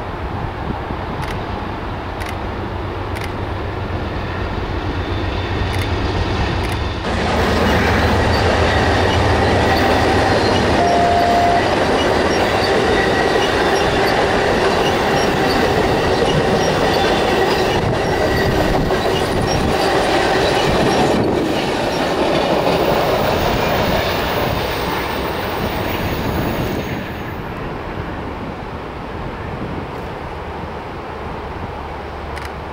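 Amtrak diesel passenger train passing close by. A steady low engine drone comes first as the locomotives approach. From about seven seconds in it turns louder, as the bilevel Superliner coaches roll past with steady wheel-on-rail noise and thin wheel squeal on the curve, then it drops away near the end.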